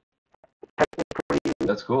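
A person's voice over an online call, nearly silent for the first half second and then breaking up into rapid choppy fragments with short dropouts between them.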